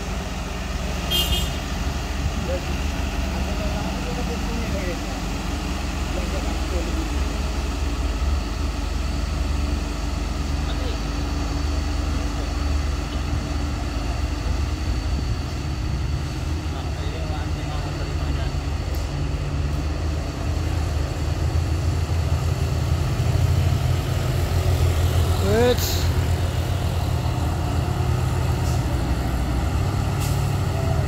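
Heavy diesel trucks running on a hill road: a steady low engine rumble that grows louder in the second half.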